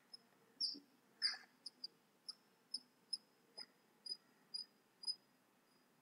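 A faint series of about a dozen short high chirps from a small animal, about two a second, growing fainter toward the end.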